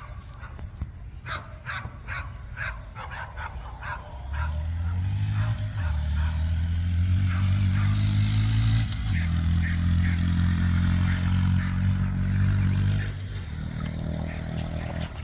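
A dog barks repeatedly. From about four seconds in, a Honda Monkey's small single-cylinder engine runs steadily close by, then drops away near the end.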